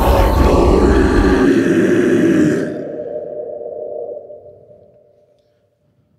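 Choir of growling voices, loud and dense, breaking off in stages over the first three seconds. One held note lingers and fades away by about five seconds, then silence.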